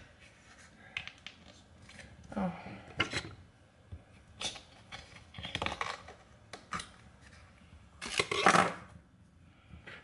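Plastic bottles being handled while a bottle feed is made up: scattered clicks, taps and scrapes of plastic parts and caps, with a louder scraping rasp about 8 seconds in.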